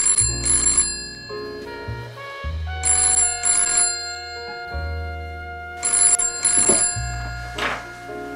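Telephone ringing in double rings: three pairs of rings about three seconds apart, over background music with sustained low notes.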